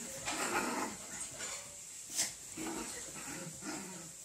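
Pinscher dog making short, irregular whimpering and barking sounds while play-fighting with a cat, with one sharp click about two seconds in.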